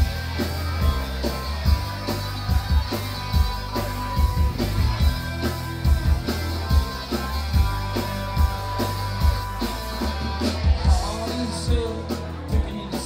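Rock band playing live in a club, heard from within the crowd: a driving, regular drum beat over heavy bass, with electric guitar.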